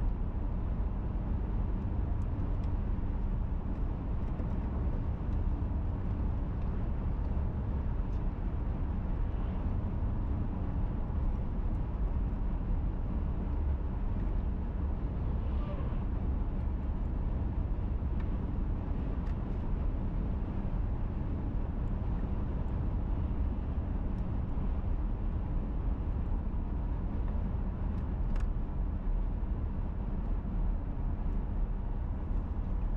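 Steady low rumble of road and engine noise from a moving car, heard from inside the cabin.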